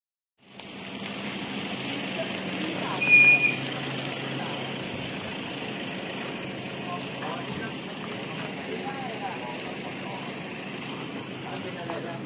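Steady low motor hum with faint, indistinct voices over it. About three seconds in there is a short, high-pitched tone, the loudest sound in the stretch.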